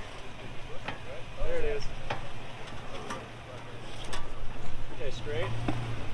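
Toyota 4Runner's 4.7 L V8 running at low revs as the truck crawls over a rock ledge, a steady low hum that grows a little louder near the end. A few short sharp knocks are scattered through it, with faint voices in the background.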